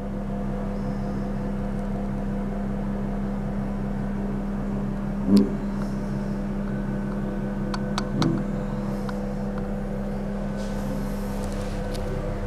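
Steady low hum inside a Mitsubishi traction service elevator car, with a few faint clicks about eight seconds in.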